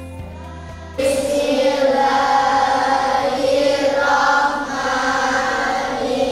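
A second of soft background music, then a group of children's voices starts reciting together in unison, a chanted, sing-song recitation held at one steady pitch.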